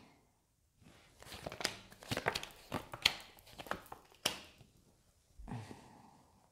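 Tarot cards being handled: a run of crisp rustling and snapping card sounds, starting about a second in and lasting about three seconds.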